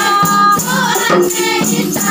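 Group of female voices singing a Simeulue nasyid song together, accompanied by the beat of rebana frame drums.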